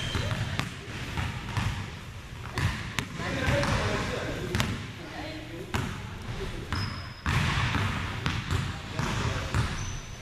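A basketball being dribbled on a hardwood gym floor in a large gymnasium: a run of sharp, unevenly spaced bounces, with a short high squeak about seven seconds in.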